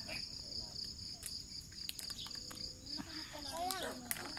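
Steady high-pitched chorus of insects such as crickets, with a faint voice near the end.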